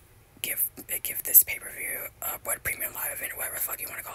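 Close whispered speech: soft, breathy talking with sharp hissing consonants.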